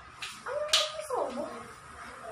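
A few sharp clinks of kitchen utensils on steel bowls, and about half a second in a short whine that holds its pitch and then slides steeply down.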